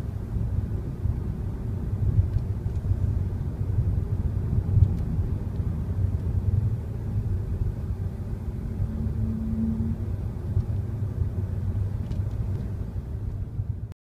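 Car driving, heard from inside the cabin: a steady low rumble of engine and tyre noise. A brief steady hum comes in about nine seconds in, and the sound cuts off suddenly at the end.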